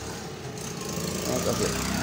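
Steady low mechanical hum with a faint hiss, from machinery running in a car's engine bay during a cooling-system flush.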